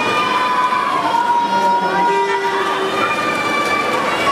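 Spectators at an indoor pool cheering on racing swimmers with long, high, held shouts, several voices overlapping over the hall's background noise.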